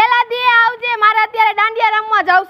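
A child singing in quick, even syllables on a nearly level, high pitch.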